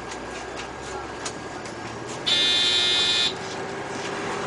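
An electronic buzzer in a city bus sounds once, a loud, high, steady buzz lasting about a second that starts and stops abruptly. It plays over the steady running noise of the bus on the move.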